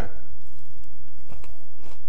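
A person biting into and chewing a mouthful of fried chicken with crispy batter crumbs, a few faint crunches. A steady low hum runs underneath.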